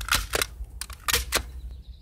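A quick run of sharp clicks and knocks, about five, from the sound effects of an animated wooden signpost logo. The sound fades out near the end.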